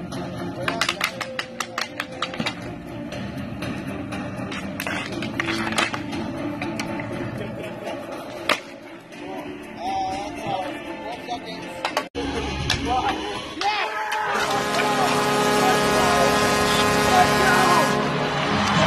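Street hockey sticks clacking against each other and the asphalt in a faceoff: a quick run of sharp knocks, then a few single knocks, with shouting. After a sudden break about twelve seconds in, music comes up and grows louder.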